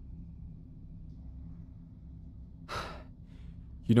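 A man's short audible breath, a sigh, about three-quarters of the way through, over a faint steady low hum; speech starts again at the very end.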